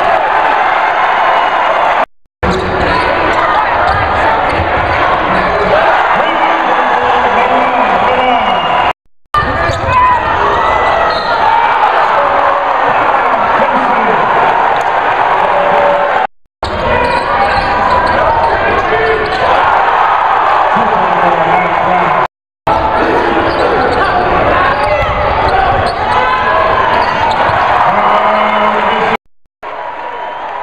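Basketball game sound in a gym: many voices calling and shouting, with a ball bouncing on the hardwood court. The sound drops out to silence five times, briefly each time.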